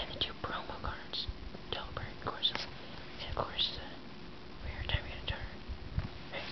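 A person whispering softly, in short hissy bursts.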